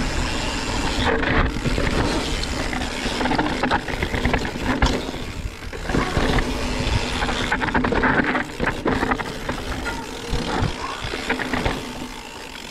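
Scott Spark mountain bike descending a rocky dirt singletrack: a steady rush of wind on the microphone over the tyres rolling on dirt and stones, with frequent short knocks and rattles from the bike as it hits rocks.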